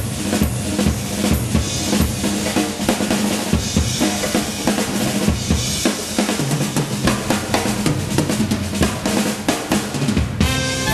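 Swing jazz drum kit solo played with sticks: snare, bass drum and cymbals struck in dense, rapid strokes.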